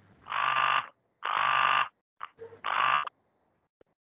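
A remote caller's voice breaking up over a video call: three short, garbled, robotic bursts with dead silence between them, the sign of a poor connection dropping out.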